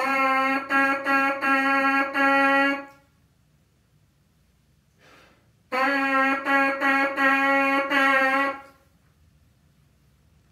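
A trumpet mouthpiece buzzed on its own, playing the rhythm ta ti-ti ta ta on one steady note. It is played twice, with a pause of about three seconds between the two phrases.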